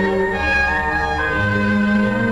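Orchestral film score led by bowed strings, holding long notes that move to a new pitch every second or so.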